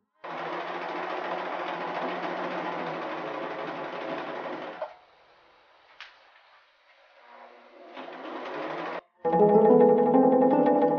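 Electric sewing machine running steadily for about five seconds, then going quiet. A click follows, then another short run about eight seconds in. Music begins near the end.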